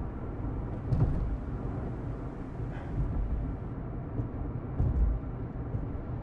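Steady low rumble of a car driving, heard from inside the cabin, with a few faint knocks.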